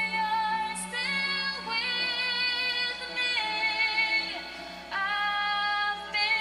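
A woman singing a slow ballad in long held notes, each held for about a second before she steps to the next pitch, with a short softer stretch just before a new note near the end.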